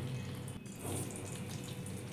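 Vegetables and whole spices frying in hot oil in a kadai (wok): a faint, steady sizzle.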